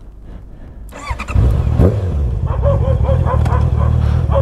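Honda CBR650R's inline-four engine starting about a second in and settling into a steady idle.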